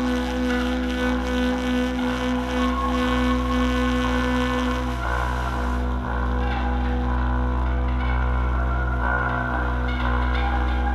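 Saxophone played through live electronics: several held drone tones layered over a steady low hum. The strongest held note drops out about halfway through, leaving the other tones sounding.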